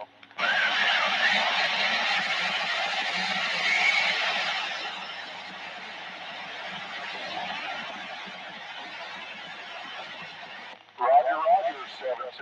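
CB radio speaker putting out a burst of loud static from a weak, fading long-distance AM signal on channel 17, with a faint voice buried in the hiss. It opens suddenly, eases off about halfway and cuts off suddenly near the end.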